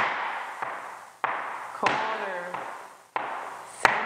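Flamenco shoes striking a wooden floor, marking time in threes: seven evenly spaced stamps, a little over one and a half per second, with the first of each group of three louder.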